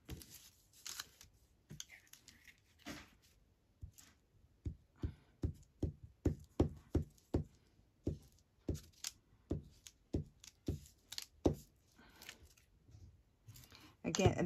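Paper being folded and pressed flat. Then a glue stick is rubbed over a small paper cutout on a cutting mat in quick, even strokes, about three a second for several seconds.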